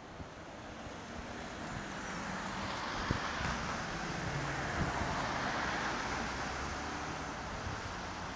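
Street traffic noise: a steady rushing of passing cars that builds over the first few seconds and then eases slightly, with a faint knock about three seconds in.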